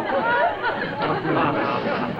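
Studio audience laughing and chattering.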